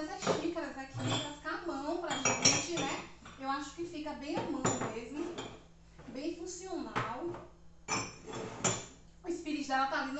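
Cups and dishes clinking and knocking against each other and a cupboard shelf as they are put away in a kitchen cabinet, a string of separate sharp clinks.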